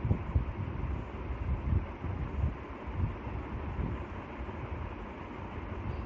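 Continuous low rumbling background noise with a fainter hiss above it, rising and falling unevenly.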